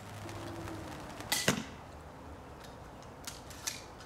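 An 80 lb Cobra pistol crossbow is fired once: a sharp crack of the string release, followed about a fifth of a second later by the bolt striking a foam target. A few faint clicks follow near the end.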